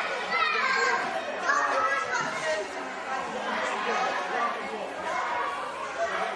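Many children's voices chattering and calling out at once, overlapping into a steady crowd babble.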